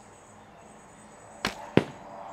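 A traditional bow shot: the string releases with a sharp snap, and about a third of a second later a 730-grain field-tipped arrow strikes a rubber horse stall mat backstop, the louder of the two sounds.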